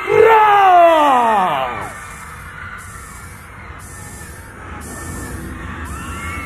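Electronic show intro played through a theatre PA: a loud pitched sound glides steadily downward for about two seconds, then drops to a quieter low drone with faint hiss pulsing about once a second.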